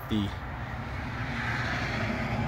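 Steady low hum of an idling vehicle engine, with a faint rushing hiss that swells about a second and a half in.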